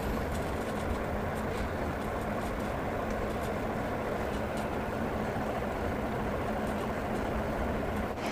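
A steady low rumble and hum of background noise with no speech, unchanging throughout.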